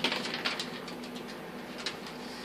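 A few faint clicks and taps on a vinyl kitchen floor as a dog moves about sniffing for dropped food, over a faint steady hum.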